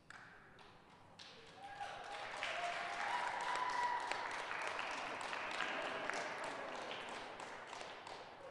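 Audience applause with some cheering voices, swelling about two seconds in and tapering off toward the end.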